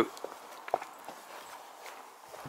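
A few soft footsteps, several short scattered steps over quiet background.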